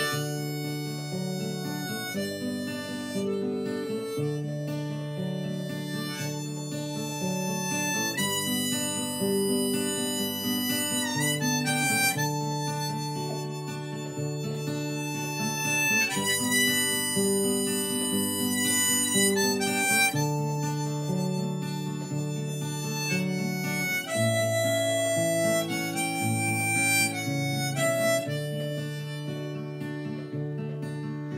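Harmonica in a neck rack playing a melodic instrumental break over strummed acoustic guitar chords, the chords changing about every two seconds.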